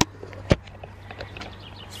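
Quiet outdoor background with faint bird chirps, broken by a single sharp click about half a second in.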